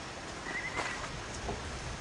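Footsteps and movement of a riding elephant through undergrowth: a few soft, irregular knocks and rustles, with a brief high chirp about half a second in.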